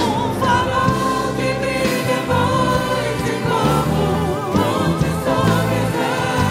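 Women singing a Portuguese worship song with vibrato, backed by a live orchestra of strings and woodwinds.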